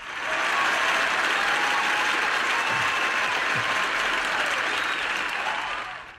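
Recorded applause sound effect: a crowd clapping, starting abruptly and cut off suddenly at the end.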